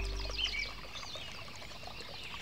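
Music fades out in the first half-second. Then comes a bed of many short, quick bird chirps, a park-ambience sound effect.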